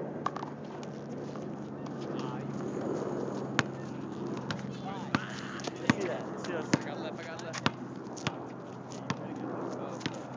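A basketball bouncing on an outdoor asphalt court: a series of irregular sharp knocks, with players' footsteps, over a steady low hum and distant voices.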